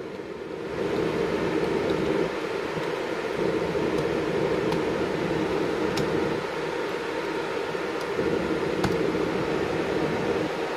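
Steady whir of computer cooling fans, with a few faint key clicks as a command is typed on a keyboard.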